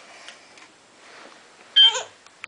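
A baby's short, high-pitched squeal near the end, after a stretch of faint soft ticks and rustles.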